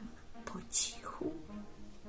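A woman whispering, with a sharp, hissing "shh" sound about a second in. Soft closing music with long sustained notes comes in about halfway through.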